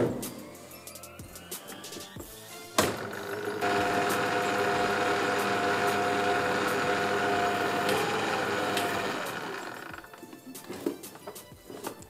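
Electric stand mixer motor running steadily for about six seconds, beating flour into an egg-and-sugar batter, then slowing and stopping.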